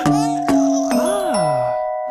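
Children's cartoon music with bell-like chimes struck about half a second apart that keep ringing, and a swooping pitch slide that rises and then falls in the second half.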